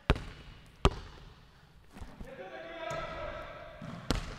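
Basketball bouncing on a hardwood gym floor as it is passed, with a sharp thud at the start and a second one under a second later. A faint drawn-out tone follows in the second half.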